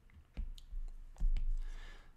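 A few sharp clicks with dull low thumps beneath them, about four in two seconds, from a stylus and pen tablet being handled on a desk.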